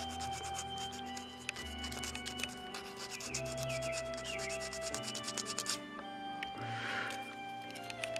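Sandpaper rubbed by hand over carved wooden feathers in quick, short strokes, smoothing out small nicks and bumps, easing off about six seconds in. Background music with held notes plays underneath.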